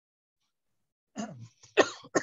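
A person clearing their throat and then coughing twice, starting about a second in.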